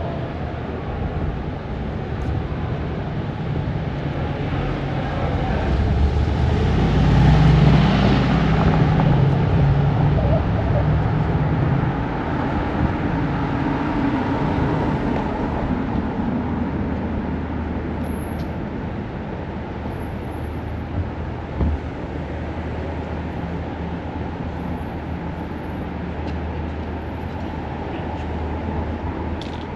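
City street traffic noise, a steady low rumble, with one vehicle passing close about seven or eight seconds in, its sound swelling and then fading away.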